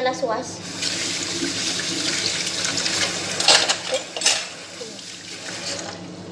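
Kitchen tap running into a sink for about four seconds, with two louder splashes near the end before the water stops.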